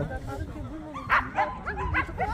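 Jindo dog giving short yips and whines, the loudest about a second in and a few smaller ones near the end.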